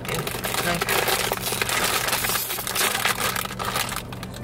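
Foil bag of Lay's Limón potato chips being pulled open and handled, a loud, dense crackling and crinkling.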